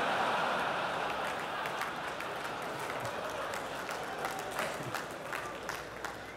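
Large audience applauding, loudest at the start and slowly dying away.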